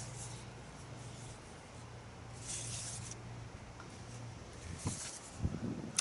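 Quiet pause with a faint steady low hum and soft rustling, one rustle about two and a half seconds in and another near the end.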